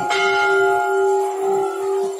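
Temple bell struck once at the start, its several overlapping tones ringing on steadily and dying away only slightly.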